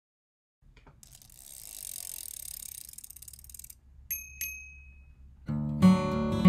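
A bicycle freewheel ticking rapidly for a few seconds, then a bicycle bell rung twice. Strummed acoustic guitar music comes in near the end and is the loudest sound.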